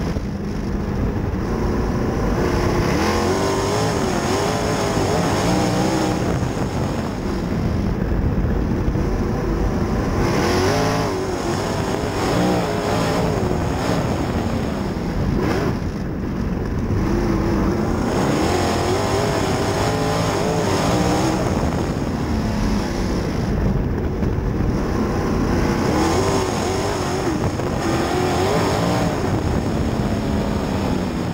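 Outlaw sprint car's V8 engine at racing speed, heard from inside the cockpit. The revs rise and fall in a repeating cycle about every eight seconds, once per lap, climbing on the straights and dropping off into the turns.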